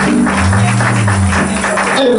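Live gospel praise band playing, with electric guitars, keyboard and drums. A fast, even percussion beat runs over a deep bass line; a low bass note sounds about half a second in and holds for about a second.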